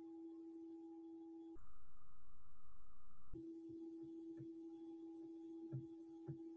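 A steady, faint electronic hum at one pitch. About one and a half seconds in it cuts out for nearly two seconds, replaced by a louder, duller noise, then comes back.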